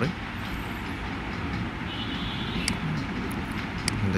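Steady background noise with a low rumble and hiss, and two faint sharp clicks in the second half.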